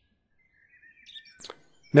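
Faint bird chirps in the background, with a short click about one and a half seconds in.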